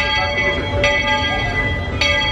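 A bell struck twice, a little under a second apart, each stroke ringing on steadily until the next.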